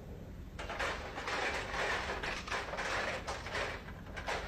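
Crashing and clattering heard over a fast-food drive-thru intercom, starting about half a second in: by the staff's account, the restaurant's ice cream machine breaking.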